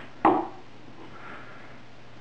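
A single sharp knock of a hard object on wood, with a short ring, about a quarter second in, followed by a faint brief rub.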